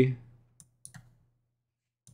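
A few faint, short computer-mouse clicks about half a second to a second in, with near silence between and after them.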